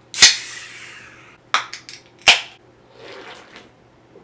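A beer can cracked open with a sharp pop and a hiss of escaping carbonation, followed by a few small clicks and a sharper tap about two seconds in.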